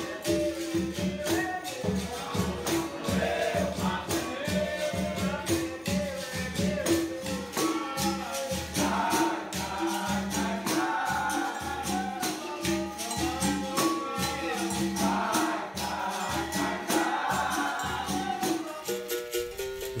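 Capoeira Angola roda music: berimbaus, pandeiro and caxixi rattles keep a steady rhythm of sharp strikes while a group sings. Just before the end it gives way to a single berimbau.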